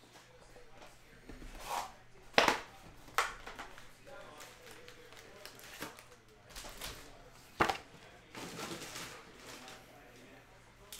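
Foil trading-card packs being taken out of a cardboard hobby box and stacked on a table: crinkling and rustling with a few sharp taps, the loudest about two and a half seconds in and again near eight seconds.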